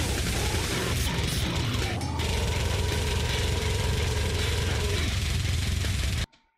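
Deathcore metal playing loud: heavily distorted down-tuned guitars, very rapid drumming and a harsh growled vocal, all at a constant, dense level.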